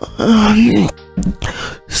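A woman's long, drowsy moan as she stretches awake in bed, followed by a shorter vocal sound, over steady background music.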